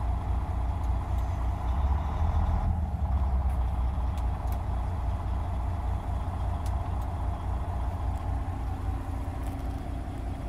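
A Volvo VNL780 semi truck's diesel engine idling steadily, heard from inside the cab.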